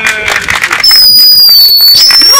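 A crowd clapping, with a long, loud, high-pitched whistle starting about a second in and held over the applause, dipping slightly in pitch and rising again.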